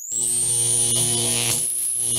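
Electronic sound-design sting for an animated logo: a steady synthetic hum made of several low tones, under a thin high whine that rises slightly and then holds.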